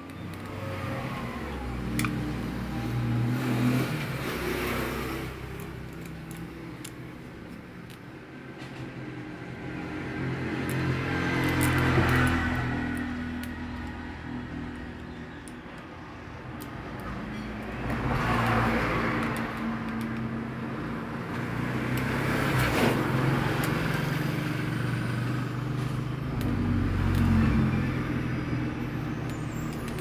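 Road vehicles passing by one after another, each swelling and fading over a few seconds, about four times, over a low steady rumble. Faint clicks of a screwdriver on the fan motor's screws.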